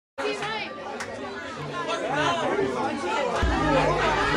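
Crowd of many people talking and calling out over one another in a large room. Near the end, a bass-heavy beat starts up under the voices.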